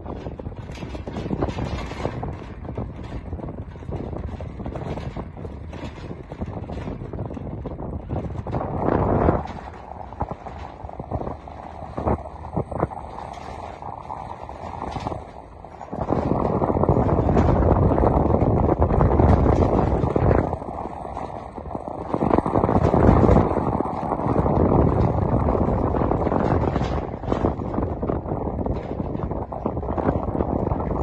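Gusty wind rumbling on the microphone, with frequent sharp buffets, growing louder about halfway through.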